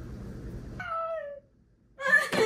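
Steady room hiss, then about a second in a short whining cry that falls in pitch and is cut off abruptly, leaving near silence.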